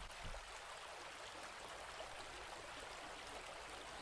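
Faint, steady hiss of background noise with no distinct event.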